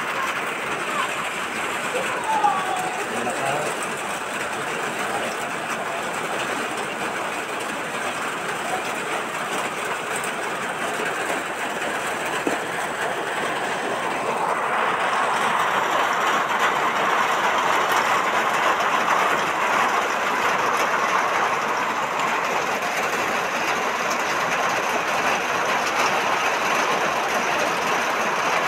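Heavy rain pouring down, a dense steady patter that grows louder about halfway through.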